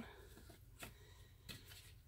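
Near silence with two faint, short clicks, one a little under a second in and one about a second and a half in: a hand pressing a nylon mesh cover onto the rim of a plastic bucket.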